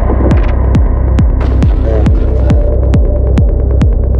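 Psytrance track: a four-on-the-floor kick drum with a quick downward pitch drop on each hit, a little over two beats a second, over a continuous deep bass and layered synth effects.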